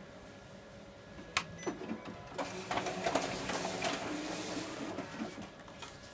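Kyocera 5551ci multifunction copier's automatic document feeder drawing a sheet through and scanning it: a click about a second and a half in, then about three seconds of mechanical feed-and-scan noise that stops shortly before the end.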